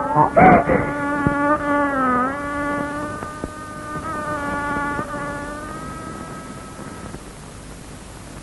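Film background score: a single held note with a buzzy tone that dips in pitch about two seconds in and slowly fades away by about seven seconds.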